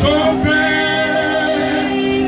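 Live gospel worship singing: several voices singing together on long held notes, a woman's voice among them.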